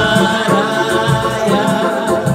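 A woman singing a long held note into a microphone over a samba band's accompaniment, with a steady low rhythm underneath.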